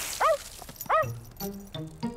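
Cartoon dog giving two short yelps less than a second apart as it is sprayed with a garden hose, just as the spray hiss stops. Light plucked music notes follow.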